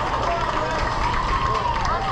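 Indistinct voices on a youth baseball field, players and onlookers calling out and chattering, some high-pitched, over a steady low rumble.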